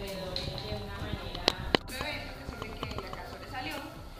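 Indistinct voices of people talking in a room, with two sharp clicks about a second and a half in.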